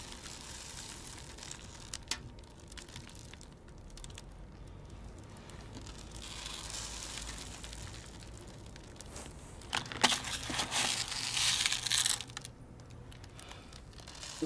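Rustling and crinkling of hands picking small candy sprinkles and raisins out of aluminium foil trays and dropping them onto a glued pumpkin. There is a louder burst of crinkling about ten to twelve seconds in.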